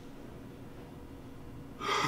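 Quiet room tone, then near the end a short, sharp intake of breath: a young man's distressed gasp.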